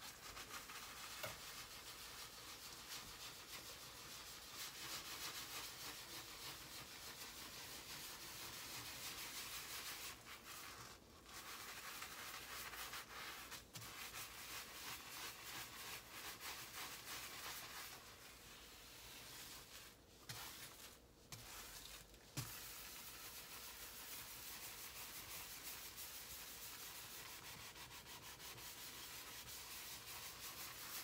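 Scrub sponge rubbing steadily back and forth over a glass-ceramic electric stovetop coated in cleaning paste, working off grime softened by the soak. The scrubbing stops briefly a few times, around ten seconds in and again around twenty seconds.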